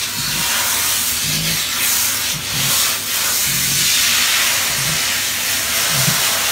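Handheld pet grooming tool running against a cat's fur with a steady hiss.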